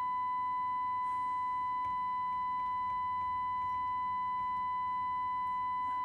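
A steady single-pitch audio test tone, transmitted by a Cobra 29 NW Classic CB radio and heard through the speaker of a second CB radio monitoring it. Weak overtones sit above the tone: the distortion that shows while the transmitter is being driven to full modulation during TX audio level alignment.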